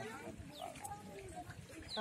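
Faint, indistinct voices and calls of several people, children among them.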